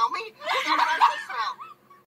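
A cartoon character's voice letting out a long, strained yell. It cuts off near the end.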